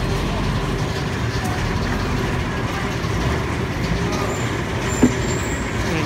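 Steady street traffic noise, a continuous rumble of vehicle engines, with one sharp knock about five seconds in.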